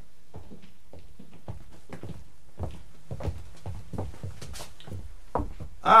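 Footsteps of several people walking, a stage sound effect in a radio play: a run of short, irregular taps and knocks. A man's voice starts near the end.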